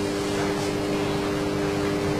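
Room tone: a steady low hum over an even hiss.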